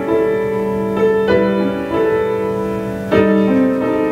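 Grand piano playing a slow, calm piece in held chords, with a new chord struck every second or two.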